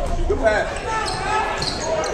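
Live basketball game sounds in a gymnasium: raised voices shouting from players and spectators over the thuds of a ball being dribbled, echoing in the hall.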